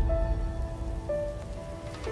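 Logo-intro sound: a few held musical tones over a deep low rumble and a hiss-like, rain-like wash, fading down. A new, higher note comes in about a second in.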